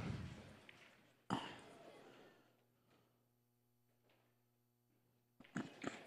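Near silence with a faint steady hum, broken about a second in by a single short exclaimed "oh".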